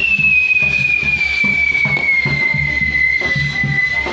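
Whistling firework on a spinning castillo fire wheel: one long, steady whistle that slowly falls in pitch and stops near the end. Under it runs music with a steady low beat.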